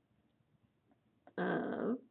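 A single drawn-out voiced sound lasting about half a second, near the end, held on one pitch and dropping as it ends.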